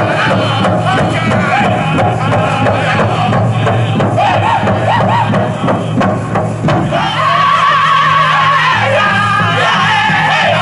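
Northern-style powwow drum group singing a jingle dress straight song over a steady beat on the big drum. About seven seconds in, the voices rise to a higher, held pitch.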